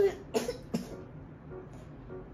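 A voice breaking off at the very start, then two short coughs about a third of a second apart within the first second.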